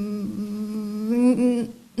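A woman's voice holding a long, level hesitation sound, a hum at one steady pitch, for most of two seconds, wavering briefly and fading out near the end.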